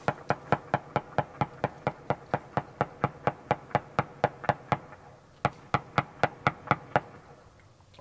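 A fast, even series of sharp ticks or taps, about four to five a second, with a short break about five seconds in, dying away near the end.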